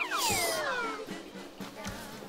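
A whistle-like comic sound effect sliding down in pitch over about a second, over background music.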